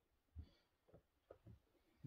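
Near silence in a quiet room, broken by four soft, short low thumps spread across the two seconds, the first the loudest.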